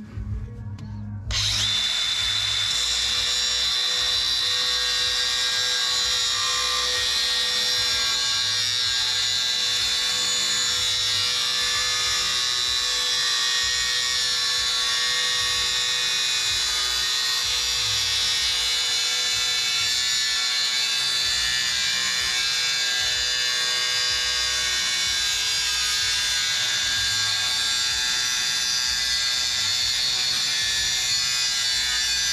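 Cordless angle grinder with a cutoff wheel starts about a second in, then runs steadily cutting through a steel truck frame bracket: a loud, even high-pitched whine with the wheel grinding in the metal.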